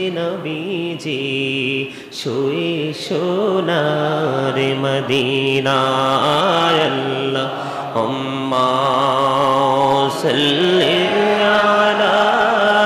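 A man chanting an Islamic zikr in a sung, drawn-out style, his voice holding long notes that waver and slide in pitch.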